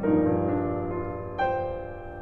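Steinway concert grand piano played solo: a chord struck at the start rings and fades, and a second chord comes in about a second and a half in.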